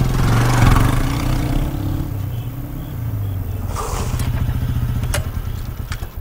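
Motorcycle engine running at low revs, a steady low pulsing throughout, with a sharp click about five seconds in.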